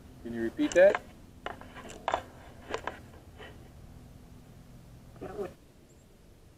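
A man's voice in short wordless vocal sounds, loudest in the first second with a quick rise in pitch, and briefly again just after five seconds, with a few sharp clicks in between.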